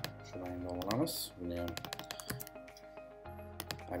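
Computer keyboard being typed on, a run of quick key clicks, over background music with a voice in it.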